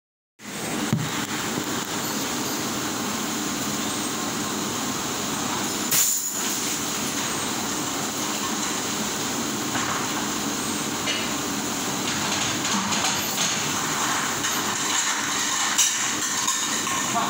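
Steady running noise of a commercial dishwasher in a dish room, with a few knocks and clatters of dish racks and crockery, the loudest about six seconds in.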